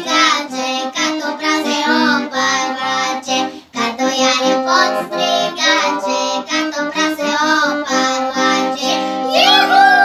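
Young girls singing a Bulgarian folk song together over an instrumental backing. Near the end a sung note slides up and then falls away.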